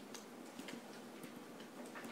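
Quiet room tone with a few faint, light clicks, about one every half second.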